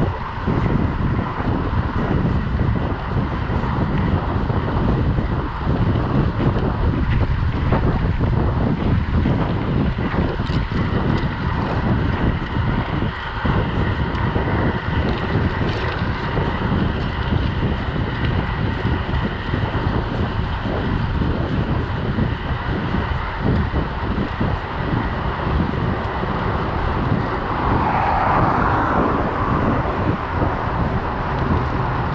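Wind buffeting the microphone of a camera on a moving bicycle, a dense steady rumble. Near the end a car passes in the oncoming lane.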